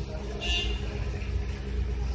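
Steady low engine rumble of a motor vehicle running nearby, with a brief high-pitched tone about half a second in.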